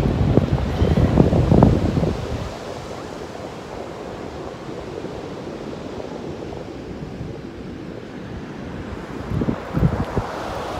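Wind buffeting the microphone in loud gusts for the first couple of seconds, then the steady wash of surf on a sandy beach, with another short gust near the end.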